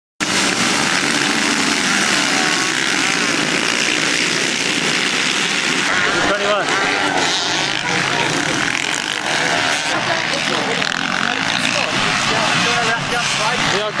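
Several motocross motorcycles racing, their engines revving up and down in rising and falling whines, with voices in the background.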